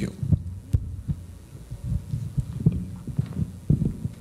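Handling noise of a handheld microphone being passed along: irregular low thumps and bumps with a few sharp clicks.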